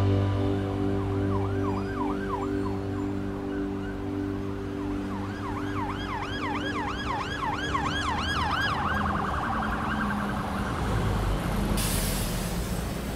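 An emergency-vehicle siren in a fast yelp, its pitch sweeping up and down about three times a second in two runs, then changing to a quicker warble. Background music fades out under it in the first few seconds, and a low rumble comes in near the end.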